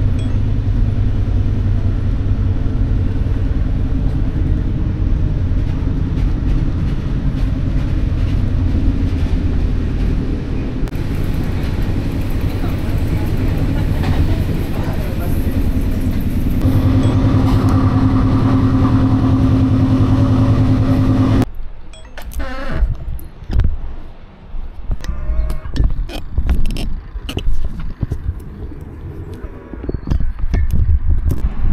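Passenger train running, heard from inside the carriage: a steady, loud low rumble that changes character twice between edited clips. About two-thirds of the way through the rumble cuts off suddenly and gives way to quieter, irregular clicks and knocks.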